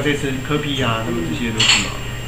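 A man talking, with a short, bright clink of tableware about three-quarters of the way in.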